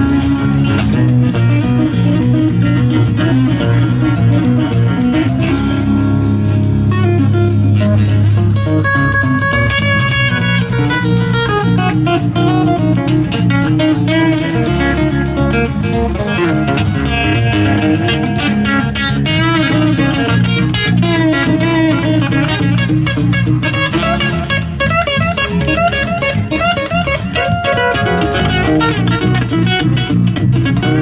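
Live acoustic band playing a steady song: strummed and picked acoustic guitars over an electric bass.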